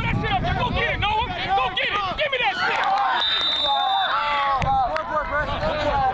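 Several indistinct voices talking and calling out at once, overlapping throughout.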